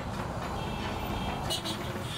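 Steady outdoor street noise, with music playing faintly under it.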